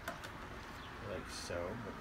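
Mostly a man's voice saying "like so", with a faint click near the start as a battery is set down into a scooter's plastic battery tray.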